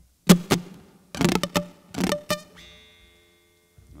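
Guitar played in a few short strums and plucked chords, the last chord left ringing and dying away: a quick check of the guitar level in the mix after asking for less guitar.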